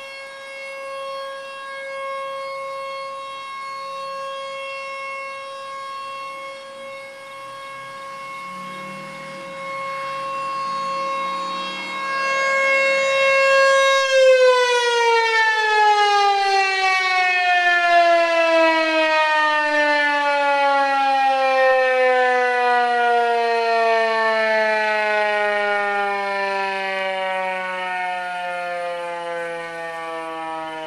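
Outdoor tornado warning siren sounding one steady, loud tone, which swells louder for a few seconds. About halfway through it stops being driven and winds down, its pitch falling smoothly and steadily as the rotor slows.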